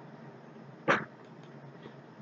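A dog barking once, a short sharp bark about a second in, over faint steady background hiss.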